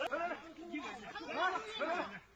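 Speech only: voices of people talking over one another.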